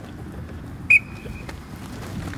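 A sports whistle blown once about a second in: a sharp, high blast that drops at once to a thinner, fainter tone held for about half a second.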